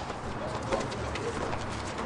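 Indistinct voices of people calling out, faint and short, with a few light knocks scattered through.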